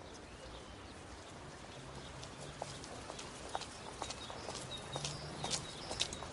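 Hard steps clicking on pavement, irregular at first, then coming about twice a second and growing louder in the second half, over a faint low outdoor hum.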